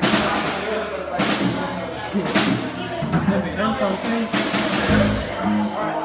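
Band gear on stage being played loosely rather than a song: a drum kit with four cymbal crashes spread through, and low bass notes and bass drum thumps in the second half, over people talking in the hall.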